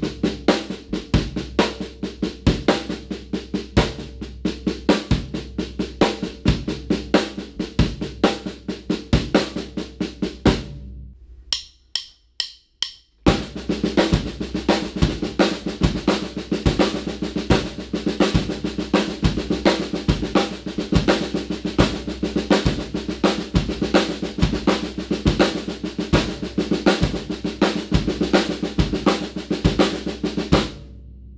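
Drum kit: a steady run of snare strokes in a five-stroke sticking grouped as triplets, over bass drum notes on the half note. About eleven seconds in it stops, four sharp clicks count it back in, and the same pattern resumes at a faster tempo.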